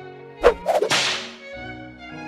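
A whip-crack swoosh sound effect about half a second in, a second snap just after, then a hiss fading away over about a second, over background music with held notes.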